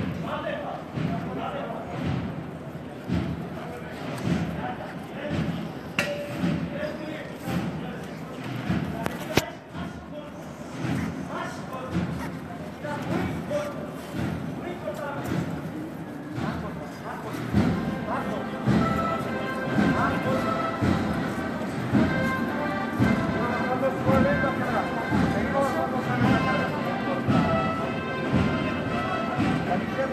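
Procession sound: a steady beat of low thuds about once a second over crowd voices. From about eighteen seconds in, music joins the beat.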